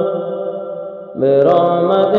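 A voice chanting an Arabic supplication in long held notes: one note fades away, then a new, lower note begins about a second in, with a slight rise.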